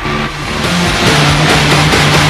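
News programme theme music: a dramatic electronic track with a low note repeating about twice a second, swelling louder about a second in.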